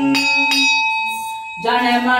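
Brass hand bell struck twice in quick succession, its ringing tones fading away. Chanting starts up again near the end.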